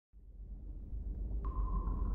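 Opening sound design of a film trailer: a deep rumble fades in and swells, and a single steady high tone enters near the end.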